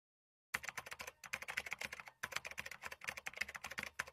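Quiet, rapid keyboard-typing clicks, a sound effect for a title being typed out letter by letter, starting about half a second in after a moment of silence.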